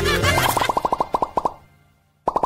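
A quick run of cartoon pop sound effects, about a dozen short pops a second, fading out toward the end, after a moment of bright children's-style background music.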